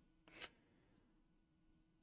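Near silence: room tone, with one brief, faint noise about half a second in.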